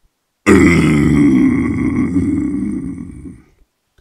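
A man's low guttural death metal growl sung close into a microphone: one long, rough, gurgling vocal that starts abruptly about half a second in, holds for about three seconds and fades out near the end.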